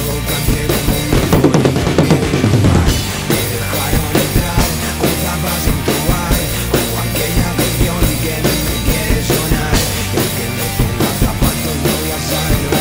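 Acoustic drum kit played along with a pop-rock backing track in a stretch with no singing. It gets louder and busier about one to three seconds in, then settles into a steady beat.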